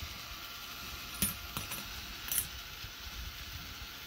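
Half-dollar coins clinking against each other on a K'nex coin pusher: a sharp metallic clink about a second in, a second soon after, and a quick double clink a little past two seconds.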